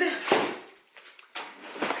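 Cardboard box being picked up and handled: scraping, rustling cardboard, loudest at the start and again near the end, with a short click in between.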